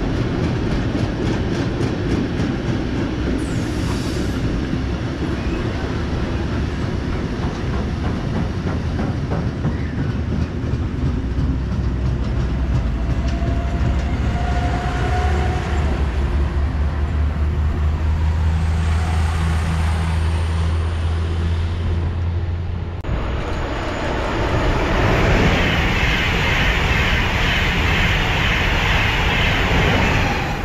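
A freight train of covered steel wagons rolling past with wheels clattering over the rail joints, joined partway through by the steady low hum of an electric multiple-unit train. After a sudden cut, an ICE high-speed train rushes past loudly.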